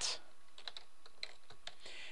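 Computer keyboard typing: a run of irregularly spaced keystrokes as a short line of code is entered.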